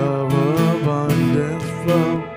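Live worship band music led by a strummed acoustic guitar, with the full band playing along.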